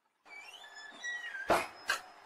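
Horror-film jump-scare sound effect: a high cry that glides in pitch, then two loud hits about half a second apart, the first the louder, cut off sharply.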